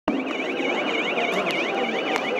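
Electronic siren or alarm wailing in a fast up-and-down sweep, about four times a second, over a background din of a crowd.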